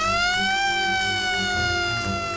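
Fire engine siren wailing: one long wail that rises, peaks about half a second in and then slowly falls.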